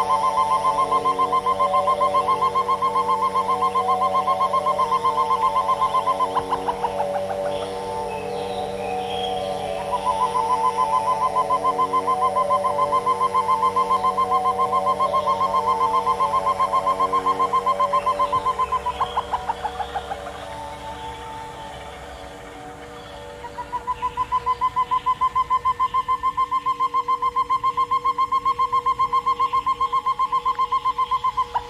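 A rapidly pulsing high tone layered over several held lower tones. The pulsing drops out twice for a few seconds, leaving only the quieter held tones, then returns.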